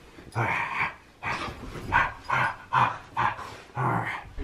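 A dog making a quick series of short vocal sounds, about two a second, while being played with on a bed.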